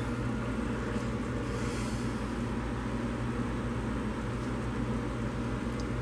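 Fresh-baked apple pie sizzling: the apple filling bubbling under the crust makes a steady fine crackle over a steady low hum.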